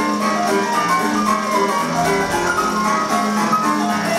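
Instrumental music: a melody of held notes over a steady beat.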